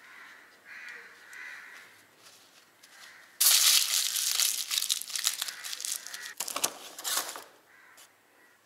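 Aluminium foil crumpled and scrunched by hand. A loud crinkling crackle starts suddenly about three and a half seconds in and goes on in ragged bursts for about four seconds.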